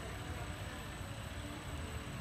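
Steady low rumble and hiss of background room noise, with a faint steady high whine above it and no distinct hoofbeats.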